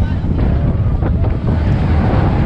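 Wind buffeting the camera microphone on a moving mine-train roller coaster car, over a loud, steady low rumble from the car running along the track.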